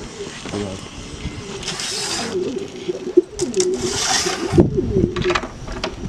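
Buchón pouter pigeons cooing repeatedly in their loft, with two brief rustling noises about two and four seconds in.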